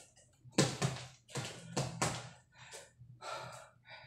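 Fists punching a mattress in quick, uneven bursts of dull thuds, mixed with sharp, hard exhaled breaths from the boxer.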